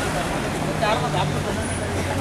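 Street traffic with a car engine running close by as it passes, and people talking in the crowd.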